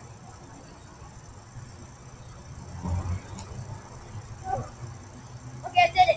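Backyard trampoline being jumped on: soft, muffled thumps from the mat, the strongest about three seconds in, over a steady low rumble. A short vocal outburst from the jumper comes right at the end.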